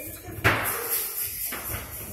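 A single loud bang about half a second in, followed by about a second of noisy rushing sound that cuts off suddenly.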